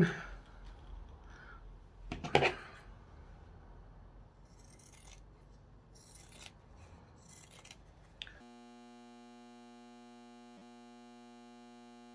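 Fabric scissors trimming a seam allowance on a sewn fabric hat brim: a few short snips, the loudest about two seconds in. From a little past eight seconds a faint, steady multi-pitched hum replaces them.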